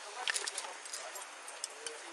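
Quick light clicks and rustles from objects being handled during a search inside a car door, bunched in the first half second, with a few scattered clicks after.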